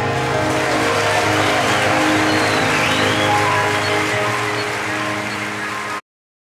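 Recorded music playing from a DJ set: a dense, hissy wash over a steady low bass tone and held notes, easing slightly in level toward the end.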